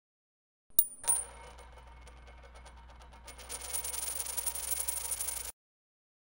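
Logo sound effect for an animated round badge: a sharp metallic click and a high ring, then a rattle of ticks that grows louder and closer together, like a coin spinning down on a hard surface. It cuts off suddenly near the end.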